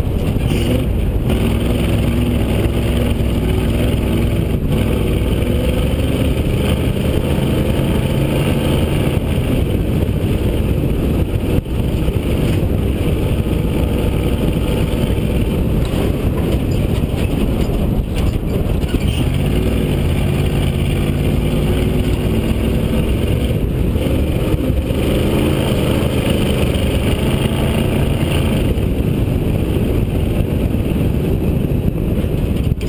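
Rally car's engine running hard over a dirt course, its note rising and falling as the car speeds up and slows, with brief dips about twelve and eighteen seconds in. Road and wind noise on the hood-mounted camera run under it throughout.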